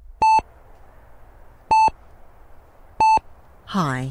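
Hospital heart monitor beeping three times, evenly, about a second and a half apart. Each beep is short and single-pitched, over a faint steady hiss of room tone.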